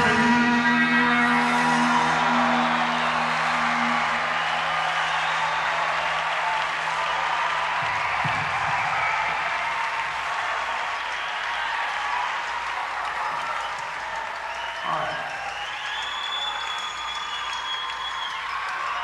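Concert crowd applauding and cheering as the band's last chord rings out and fades over the first several seconds, heard on a cassette audience recording. Whistles and shouts rise from the crowd near the end.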